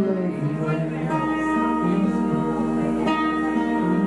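Acoustic guitar played live, a run of ringing chords changing about every second.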